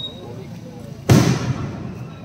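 A firework shell bursting overhead: one sharp, loud bang about a second in that dies away within half a second.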